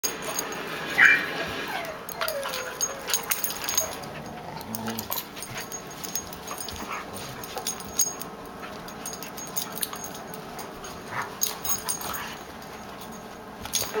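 Two dogs play-fighting: scuffling, jaw snaps and short cries, with a sharp high yip about a second in and a falling whine just after.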